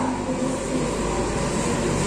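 Steady background noise with a low rumble and hiss, no distinct events.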